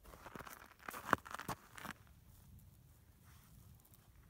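Crusty snow crunching close to the microphone: a quick run of crackles and scrapes over the first two seconds, loudest about a second in, then quiet.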